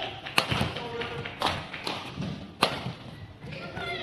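Badminton rally: racket strings striking the shuttlecock in sharp cracks about a second apart, with short squeaks of shoes on the court mat between hits.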